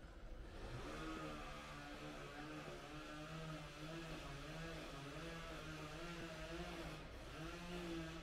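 A motor vehicle engine running nearby, its pitch holding roughly level with small rises and falls, briefly dropping out about seven seconds in before picking up again.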